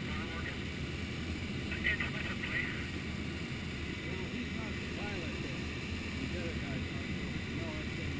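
Steady rush of airflow over the canopy of an ASH 25 sailplane in gliding flight, heard from inside the cockpit.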